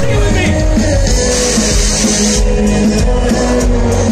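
Live hip-hop music played loud over a concert sound system and heard from the crowd, with a heavy steady bass and a wash of high hissing noise about a second and a half in.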